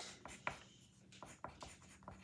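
Pencil writing on paper: a series of short, faint scratching strokes.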